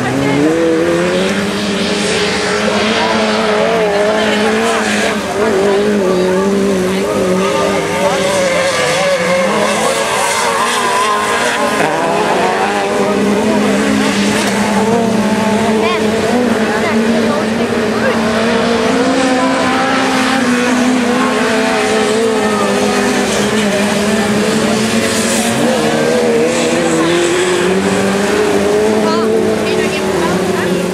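Several dirt-track race car engines running together, their revs rising and falling unevenly and overlapping, with no break.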